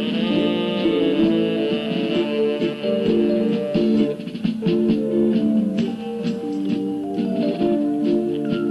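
Instrumental music with no singing: a melody of held, sustained notes over a continuous accompaniment.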